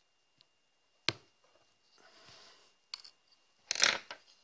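Small metal and plastic parts of an RC car differential clicking and clinking as they are handled with a small screwdriver: a sharp click about a second in, a couple of lighter clicks near three seconds, and a louder clatter of clinks just before the end.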